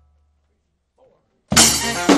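New Orleans–style second line brass band stopping dead, with only a fading bass drum tail, then coming back in all together about a second and a half in with a loud crash of cymbal, drums and horns.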